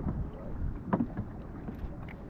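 Kayak paddles stirring the water around plastic kayaks, with a couple of short clicks about a second in, over a low wind rumble on the microphone.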